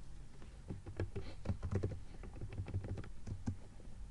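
Typing on a computer keyboard: a run of quick, irregular keystrokes.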